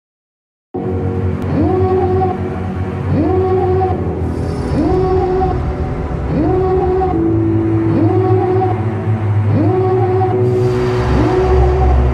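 Electronic background music starting abruptly about a second in: a synth riff that swoops upward in pitch about every second and a half over a steady bass, with a noisy rising swell building near the end.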